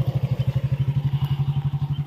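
A small single-cylinder commuter motorcycle's engine running at low speed close by, a loud, steady, even beat of about twelve pulses a second.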